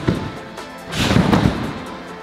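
Trampoline bed thudding under a gymnast's bounces: a sharp thump at the start and a heavier one about a second in as he takes off into a twisting somersault, over background music.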